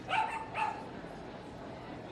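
A small dog barking twice: two short, high-pitched yaps about half a second apart.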